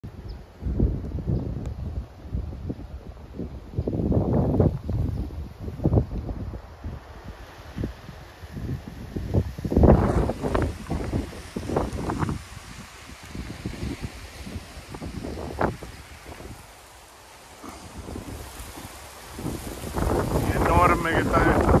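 Wind buffeting the microphone in irregular gusts, the strongest about four and ten seconds in, with palm fronds rustling.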